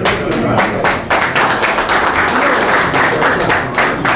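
A roomful of people applauding: dense, steady clapping from many hands, with a few voices among it.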